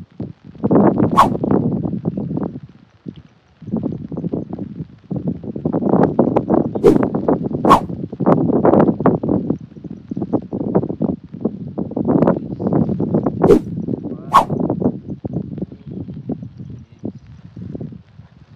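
A plastic bag of live tilapia being handled and rustled, with fish flapping inside it and a few sharp slaps.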